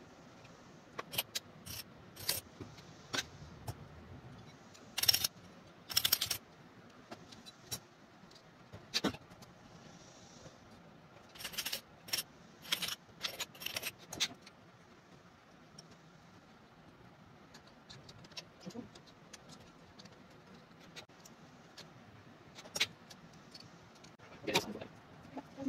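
Metal parts of a CAV diesel fuel injection pump clinking and tapping as it is taken apart by hand: scattered sharp clicks, bunched about five seconds in and again from about eleven to fourteen seconds, with quieter stretches between.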